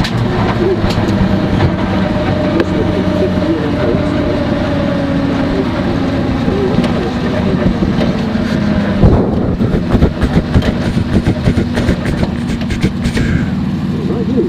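Skoda WRC rally car's turbocharged four-cylinder engine running hard at a steady pitch, heard from inside the cockpit over road and drivetrain noise. From about nine seconds in, a rapid run of sharp cracks and knocks comes through over the engine.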